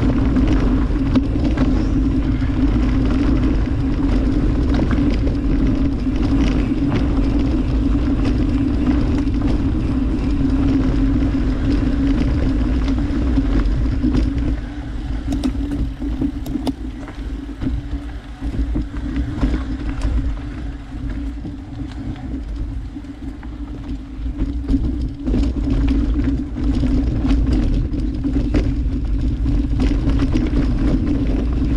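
Mountain bike rolling down a dirt singletrack: tyre rumble and wind on the microphone with a steady buzz. About halfway through it quiets and turns choppier, with scattered clicks and rattles from the bike over rough ground.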